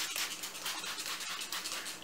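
Plastic spray bottle misting water onto hair in a quick run of repeated hissing squirts.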